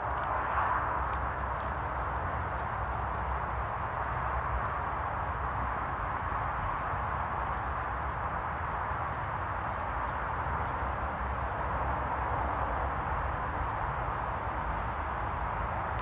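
Footsteps of a person walking on a grassy path, over a steady background rumble and hiss.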